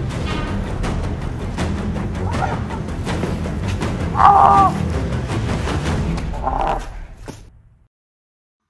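Background music with a steady low pulse, overlaid with two short high-pitched squawk-like cries, about four seconds in (the loudest moment) and again near six and a half seconds; the music then fades out.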